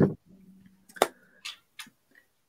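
Plastic Lego pieces clicking as they are handled and pressed together: one sharp click about a second in, then two fainter clicks.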